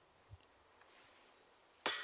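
Near silence, then a single sharp knock with a brief ring just before the end.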